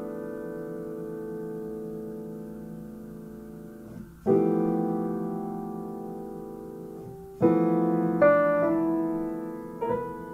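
Solo piano playing slow jazz chords built on the Japanese In-sen pentatonic scale, each chord left to ring and fade before the next. A new chord comes about four seconds in, then several more in quicker succession over the last three seconds.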